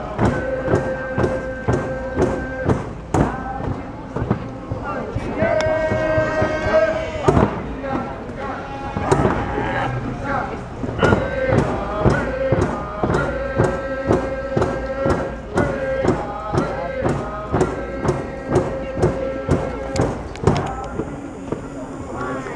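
Drums beaten in a steady beat, about two to three strokes a second, with a group of voices singing long held notes over them; the melody steps to a higher note a few times.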